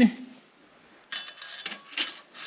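Light metallic clicking and rattling from about a second in: a steel tape measure blade being moved and laid across steel plate.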